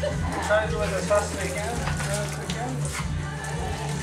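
Background voices and music over faint splashing of water from a hand-lever pump.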